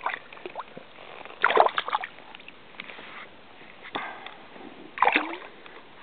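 Shallow stream water splashing in three short bursts, about a second and a half in, at four seconds and again at five, as a hooked brook trout is grabbed at by hand in the water.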